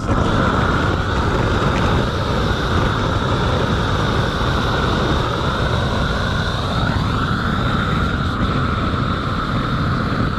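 Gas roofing torch burning steadily: a constant, even rushing noise while torch-on felt is bonded to a skylight upstand.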